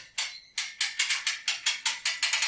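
Winch ratchet of a drywall panel lift clicking rapidly, about six clicks a second, as its crank wheel is turned to raise a plasterboard sheet toward the ceiling.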